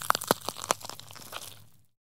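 Logo sting sound effect: a run of sharp, irregular clicks and crackles over a faint low hum, thinning out and fading away near the end.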